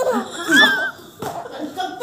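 A baby and an adult laughing, with a high, wavering squeal of laughter about half a second in.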